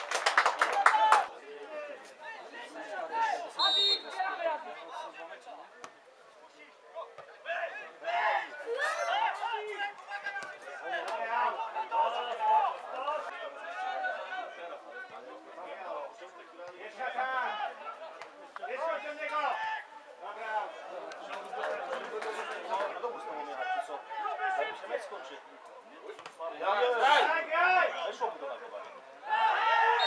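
Scattered shouts and chatter of footballers and spectators around the pitch, mostly distant and unclear. The voices are louder in the first second and again near the end.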